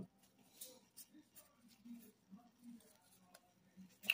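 Near silence, with faint rustling and light ticks of a stack of glossy trading cards being shuffled and fanned in the hands.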